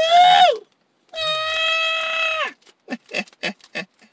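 A man's voice making high, drawn-out wordless exclamations: a call rising in pitch that breaks off half a second in, then a long held high note, then a few short laughs near the end.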